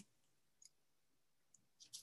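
Near silence with two or three faint clicks as a presentation slide is advanced on a computer.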